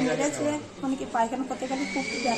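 A person talking in a fairly high, wavering voice, with no clear words made out.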